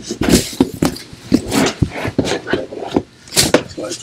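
Tesmanian cargo-area floor mat being worked into a car's trunk by hand: irregular scuffs, flaps and knocks as the stiff mat slides and is pressed down onto the trunk floor.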